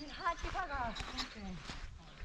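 Only speech: people's voices talking and calling out, quieter than the talk around it.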